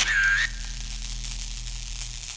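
Logo sting sound effect: a whoosh carrying a short whistle-like tone that dips and rises again, ending about half a second in, followed by a steady high shimmering hiss over a low hum.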